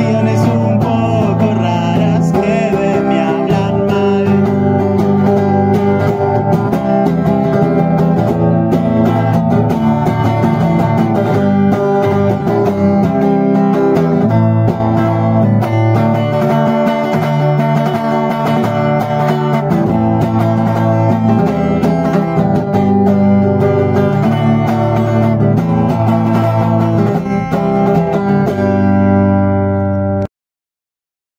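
Acoustic guitar playing a song cover, steady and full throughout.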